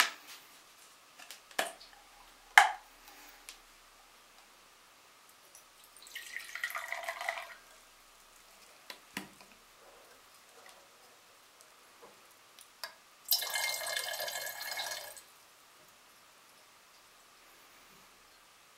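Dilute acetic acid poured twice: from a plastic bottle into a glass beaker about six seconds in, then from the beaker into a glass round-bottom flask about thirteen seconds in, each pour lasting a couple of seconds. A few sharp clicks and knocks of the bottle and glassware come between, the loudest early on.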